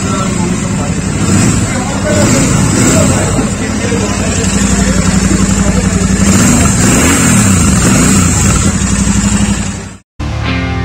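Royal Enfield Super Meteor 650's parallel-twin engine idling steadily, with a short rise and fall in revs about seven seconds in.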